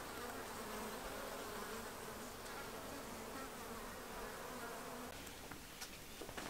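Honeybees buzzing in a steady hum around the entrance of a wooden hive, with a few light clicks near the end.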